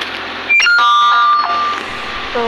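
An electronic doorbell-like chime: a short run of steady tones stepping down in pitch, starting suddenly about half a second in and lasting about a second.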